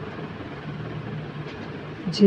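A steady low hum under a faint even hiss.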